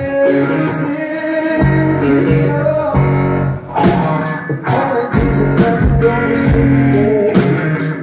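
Live band music heard from the crowd: guitar and bass with a man singing into a microphone. A steady cymbal beat comes in about halfway.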